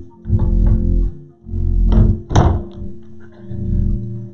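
Instrumental church music, sustained low organ-like notes in phrases about a second long, with a single knock about halfway through.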